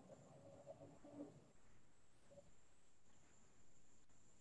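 Near silence: faint room tone over a video call, with a faint steady high-pitched whine and a few faint brief tones in the first second or so.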